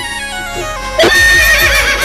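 DJ mix of a Rajasthani devotional song in an instrumental passage: a melody stepping down in pitch over a drum beat. About a second in, a loud horse whinny sound effect cuts in over the music, its pitch wavering, and lasts about a second.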